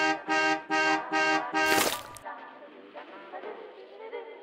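Bus horn honked in rapid short blasts, about five in the first two seconds with the last one the loudest, cutting off suddenly about halfway. Quiet music follows.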